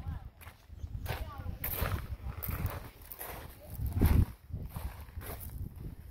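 Footsteps crunching on gravel and loose dirt, an uneven run of strokes with a louder cluster about four seconds in, over a low rumble.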